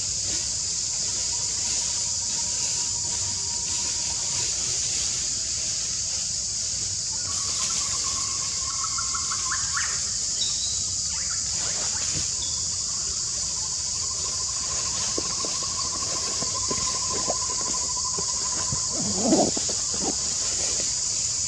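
Steady high-pitched hiss of outdoor forest ambience, with a few faint thin whistled calls and trills through the middle and one brief louder, lower sliding sound near the end.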